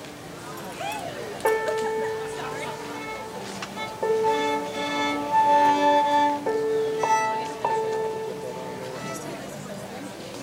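Violin being tuned: bowed open strings held for a second or two at a time, often two strings sounded together, with short breaks between the strokes.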